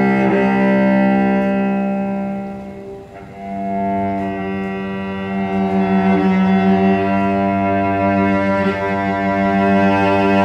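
Cello bowed in long held low notes, several strings sounding together as a slow drone. The sound dips and almost fades about three seconds in, then a new held chord swells up, with a deeper note joining about five seconds in.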